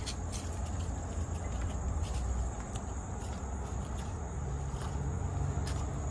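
Insects chirring in a steady high-pitched drone over a low steady rumble, with a few soft footsteps on cobblestones.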